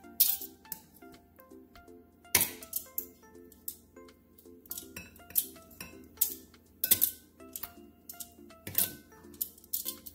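A metal fork clinking sharply against a glass bowl several times at irregular moments while peeled tomatoes are handled, over quieter background music.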